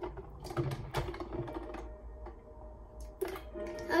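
Light plastic clicks and taps of a toy submarine's hull and parts being handled and pushed in water, several scattered knocks, most in the first second and a couple near the end.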